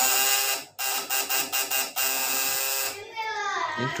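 Homemade high-voltage DC booster running on 24 V, its vibrating platinum contact points giving a loud, harsh electrical buzz. The buzz breaks off briefly under a second in and stops about three seconds in.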